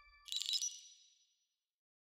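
A short, bright, high ding from a studio-logo sound effect, rising over the fading ring of the hit just before it and dying away within about a second.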